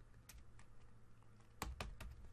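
Computer keyboard being typed on: a few faint, scattered keystroke clicks, with two clearer clicks near the end.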